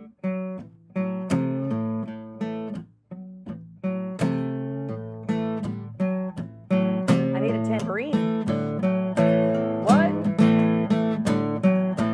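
Cutaway acoustic guitar being strummed. For the first few seconds the chords are struck singly with short gaps between them, then they run on without gaps and settle into a steady, louder strummed rhythm from about seven seconds in.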